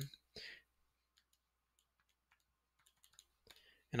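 Faint, scattered key clicks as a multiplication is entered into a calculator.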